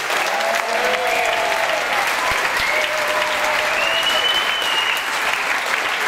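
Audience applauding steadily after the end of a speech.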